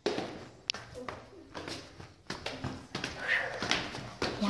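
Scattered light taps and knocks from a phone being handled and moved about, with a faint child's voice about three seconds in.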